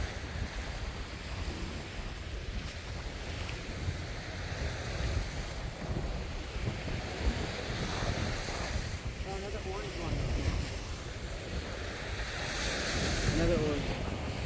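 Wind buffeting the microphone over the steady wash of surf on a beach. A faint voice comes in briefly about two-thirds of the way through and again near the end.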